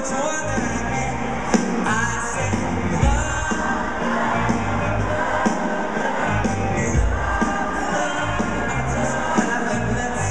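Live band music with a male singer, played through an arena's sound system and recorded from the crowd.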